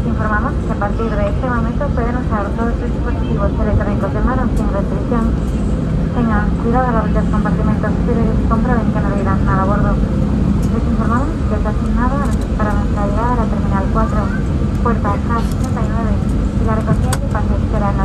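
Airbus A320 cabin noise while taxiing: a steady low rumble from the idling engines and the rolling aircraft, with a voice talking over it almost throughout.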